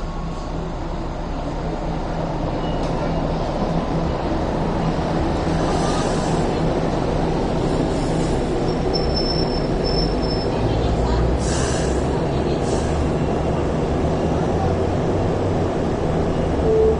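Hong Kong Light Rail cars running through a stop, with a steady electric motor hum and wheels rumbling on the rails, growing louder as a car passes close. A thin high-pitched squeal comes and goes about nine to ten seconds in, and a few short clanks are heard.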